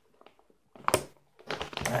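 Foil potato chip bag crinkling as it is handled, with a short sharp crackle about a second in and more rustling near the end.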